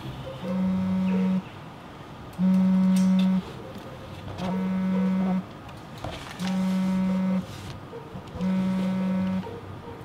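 Telephone ringing signal: a low electronic buzz that sounds for about a second and pauses for about a second, repeating evenly five times.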